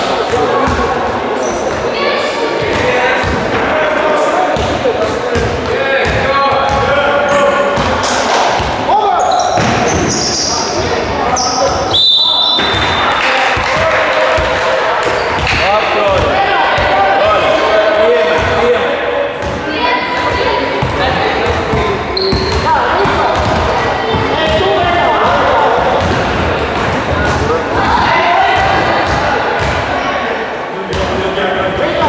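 Basketball bouncing on a gym floor, with players' voices and footsteps in a large hall. A short, shrill referee's whistle sounds about twelve seconds in.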